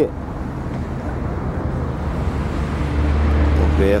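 Road traffic: a steady low rumble that grows louder near the end as a vehicle passes closer.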